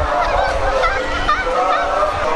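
A woman's excited high-pitched squeals, short wavering rising and falling cries repeated through the moment, over the hubbub of a crowd.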